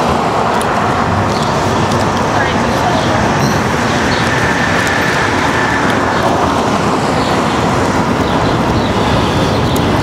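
Steady city street traffic noise, with cars driving past.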